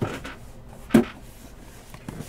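Two short knocks about a second apart, the second louder, as a cardboard box is handled and taken up from the table.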